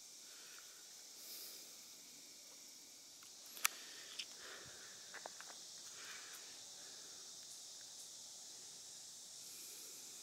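Quiet woodland ambience: a steady faint high hiss, with one sharp click about three and a half seconds in and a few soft light ticks and crunches over the next two seconds.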